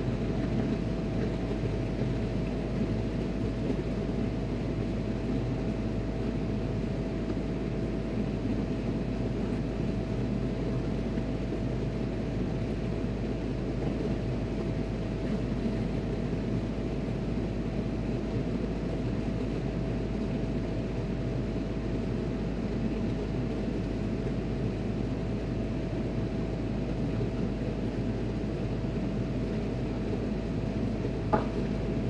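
Steady drone of ship's machinery, deep and unchanging, with a thin steady whine above it.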